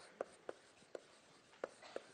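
Chalk writing on a blackboard: about six short, sharp taps and scrapes at uneven intervals as a word is chalked.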